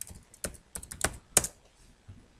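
Computer keyboard keystrokes: about eight quick, uneven key presses, the loudest one near the end, then the typing stops.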